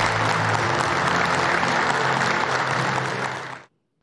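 Applause, dense and steady, over faint background music, cut off abruptly shortly before the end.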